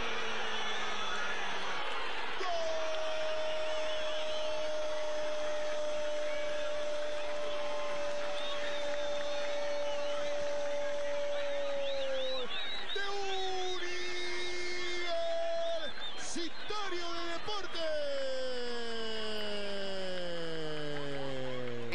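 A Spanish-language football commentator's drawn-out goal cry, a single note held for about ten seconds. It is followed by a few shorter held calls and falling cries near the end, over steady background noise.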